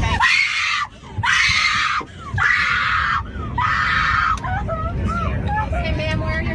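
A young woman screaming and wailing in distress: four long cries, each about a second, with short catches of breath between, then a quieter wailing voice near the end. A low, steady rumble of aircraft cabin noise runs underneath.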